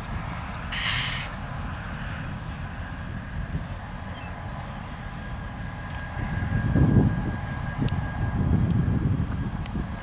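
Freight train cars rolling past at a distance: a steady low rumble that swells twice in the second half. A brief hiss comes about a second in.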